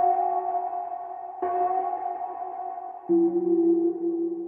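Instrumental passage of a rap track with no vocal: sustained synthesizer chords, a new one struck about every second and a half, the third one lower in pitch.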